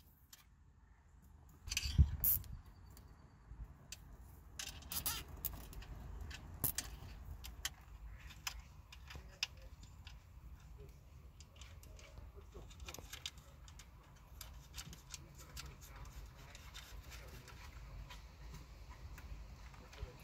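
Hands handling a coiled antenna cable and its connector: scattered small clicks, rustles and taps, with one louder knock about two seconds in.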